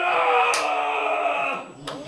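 A man's voice through a microphone holding one long shouted note that slowly falls in pitch and cuts off about a second and a half in, followed by a sharp click near the end.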